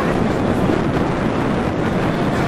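Wind on an outdoor microphone: a steady, low rumbling noise with no distinct events.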